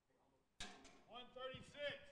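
Near silence, then faint, off-microphone speech from about half a second in.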